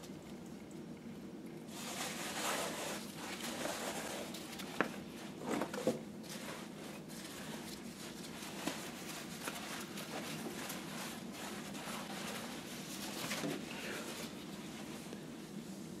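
Wet cotton fabric being handled with nitrile-gloved hands in a stainless steel sink: faint, irregular rustling and squishing, with a few brief sharp clicks.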